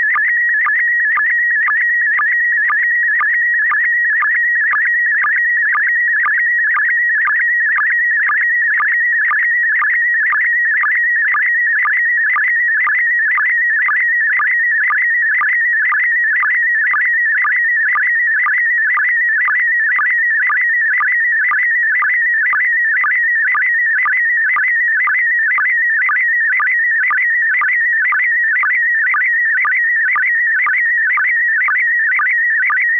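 Slow-scan television (SSTV) image signal: a warbling audio tone near 2 kHz, broken by a short sync beat a little over twice a second as the picture is sent line by line.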